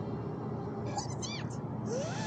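Cartoon bats squeaking: a quick run of short high squeaks falling in pitch about a second in, then a longer call that rises and falls near the end.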